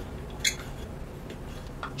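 Small metal herb grinder being turned by hand: one sharp click about half a second in, then faint ticking and scraping.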